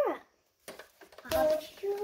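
A young child's voice: a vocal sound sliding down in pitch right at the start, a short pause with a few faint clicks, then wordless vocalising again in the last part.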